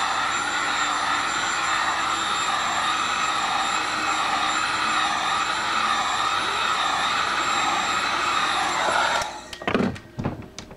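Electric heat gun running steadily, blowing hot air onto a motorcycle seat cover to heat it up. It cuts off about nine seconds in, followed by a couple of knocks as the seat is handled.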